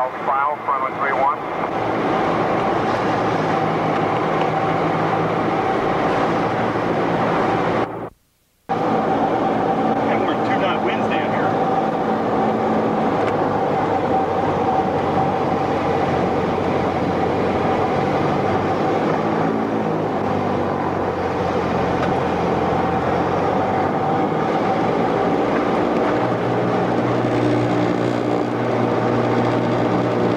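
Light aircraft's piston engine and propeller droning steadily, heard from inside the cockpit on approach to the runway. The sound cuts out completely for about half a second some eight seconds in. The engine note shifts a little near the end.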